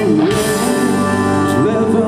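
Live rock band playing loud: distorted electric guitars, bass and drum kit, with a man singing a held note that bends in pitch.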